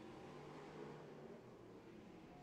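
Near silence, with the faint drone of race car engines circling the track.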